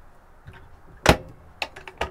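Overhead kitchen locker door pushed shut, closing with one sharp snap about a second in, followed by a few lighter clicks.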